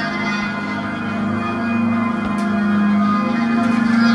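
Electroacoustic drone music: many steady, overlapping sustained tones over a strong low hum that pulses faintly and swells a little about two seconds in.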